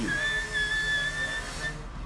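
A steady high-pitched whistle-like tone held for about a second and a half, followed by a brief second blip of the same pitch.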